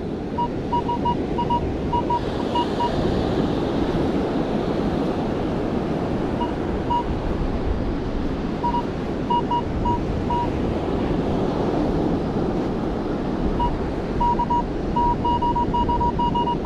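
Minelab Equinox 800 metal detector giving clusters of short, same-pitched beeps as its coil sweeps back and forth, signalling metal buried under the coil. The beeps sound over a steady rush of wind and surf.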